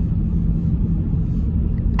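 Steady low rumble of road and engine noise inside a car cabin while driving at freeway speed.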